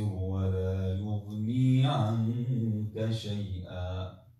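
A man's voice reciting the Quran in Arabic in a melodic, drawn-out chant (tajweed), with long held notes and short breaks between phrases; the recitation stops at the very end.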